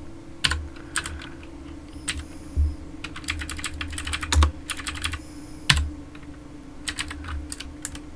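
Typing on a computer keyboard: irregular key clicks, some single and some in short quick runs, over a faint steady hum.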